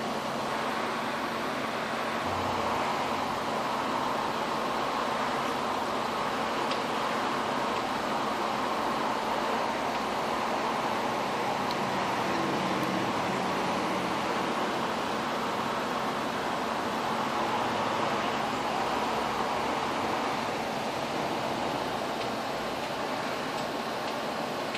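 Steady background hiss of room noise, even and unchanging, with no distinct events.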